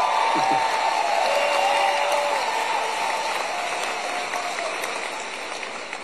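Audience applauding, with a few voices calling out over the clapping; it is loudest early and fades slowly toward the end.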